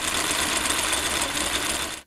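Film projector running: a dense, steady mechanical rattle with a low hum beneath it, stopping abruptly at the end.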